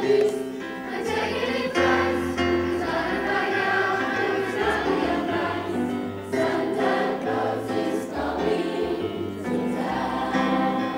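A choir of secondary-school students singing, many young voices together holding long notes.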